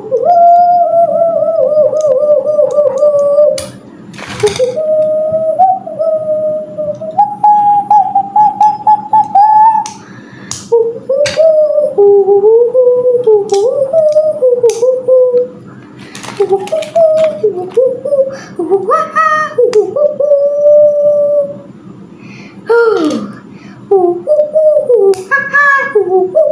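A child humming a wandering, wordless tune: long held notes with a slight wobble, sliding up and down, with short breaks every few seconds. A few sharp clicks fall between the notes, over a steady low background hum.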